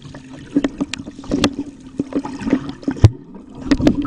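Water splashing and gurgling right at the microphone, with irregular sharp pops and knocks over a steady low hum; the loudest knock comes about three seconds in.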